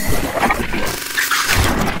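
Loud, dense arena crowd roar from a boxing broadcast, with a commentator's voice breaking through in places.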